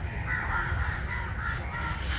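Crows cawing in the background, several short caws, over a steady low hum.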